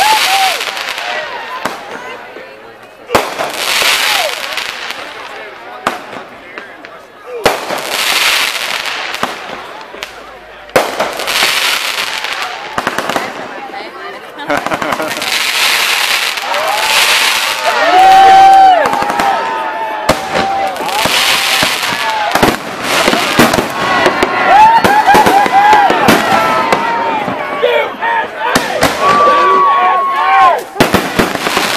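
Aerial fireworks going off overhead: sharp bangs a few seconds apart, each trailing into a long crackling, fizzing spray. In the second half, people's voices call out over the fireworks.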